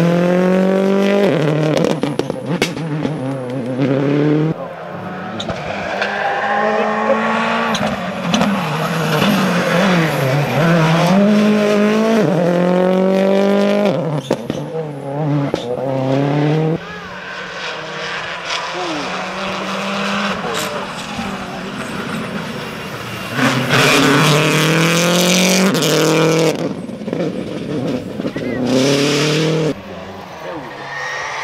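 Turbocharged World Rally Cars accelerating hard past the roadside, each engine note climbing and dropping back again and again as the driver shifts up through the gears. Several cars go by one after another, with abrupt changes between passes.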